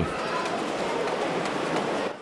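A steady, even hiss of open-air background noise, with no distinct sounds standing out in it.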